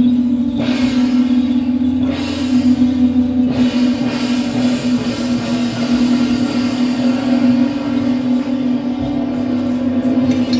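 Taiwanese shaojiao long brass horns sounding a sustained low drone on one steady pitch, with a second lower drone that drops out about three and a half seconds in.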